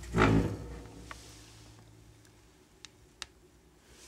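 Wood stove door being swung shut: a loud low clunk with a grating hum that fades over about a second and a half, followed by a few faint ticks.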